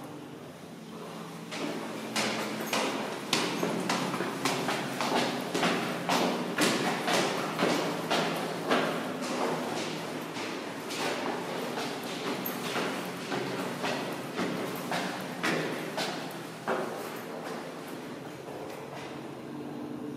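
Footsteps on stone, about two steps a second, starting about a second and a half in and fading out near the end, over a steady low background hum.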